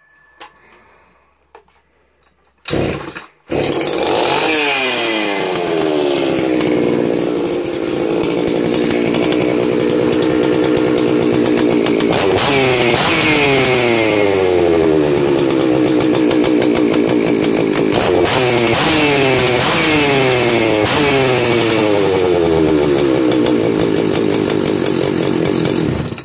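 Husqvarna 61 two-stroke chainsaw started up about three seconds in. It runs at a fast idle that slows and settles, then is blipped on the throttle several times in the second half, the revs jumping up and falling back each time, before being shut off at the very end. The saw is freshly rebuilt and, by the owner's account, still wants a little carburettor adjustment as it breaks in.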